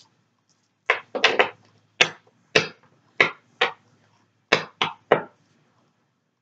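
Tarot cards being shuffled by hand: about eleven short, sharp card slaps in irregular clusters, stopping just past five seconds.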